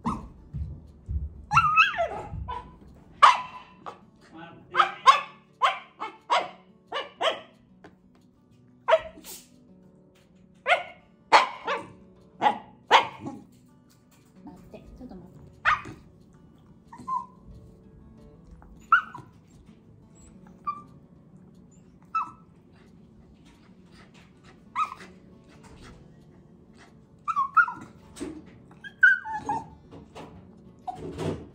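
Shiba Inu whining in short, high-pitched squeaky cries and yelps ("pee-pee"), an impatient begging whine for food. The cries come in a rapid run through the first half, thin out, then bunch up again near the end.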